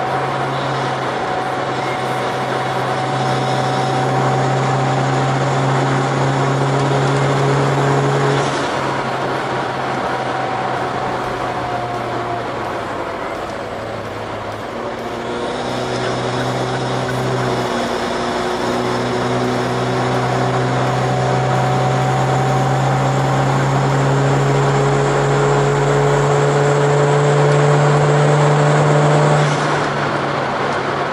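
Turbocharged Toyota Avanza's 2NR-VE four-cylinder engine heard from inside the cabin under load at highway speed, over steady road noise and a faint high whine. The engine note eases off about a third of the way in and dips again in the middle, then climbs steadily for a long pull before cutting off sharply near the end.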